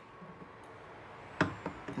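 A quiet room with a short knock of plastic being handled about one and a half seconds in, followed by a couple of lighter clicks, as a hand siphon pump and bottle are fitted over a plastic gas can.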